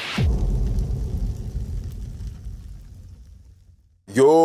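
Cinematic boom sound effect closing an electronic logo intro: a sudden deep hit with a quick falling sweep, whose low rumble fades out over about three and a half seconds.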